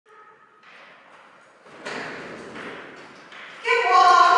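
A woman's voice calling out to a dog near the end, loud and drawn out in falling tones. Before it, a softer rush of noise starts about two seconds in.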